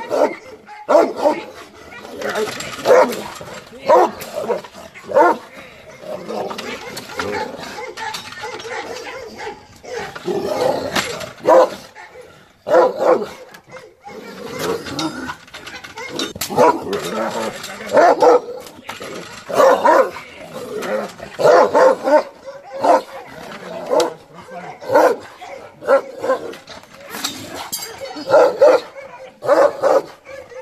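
Dogs barking, short barks again and again at irregular intervals of a second or two.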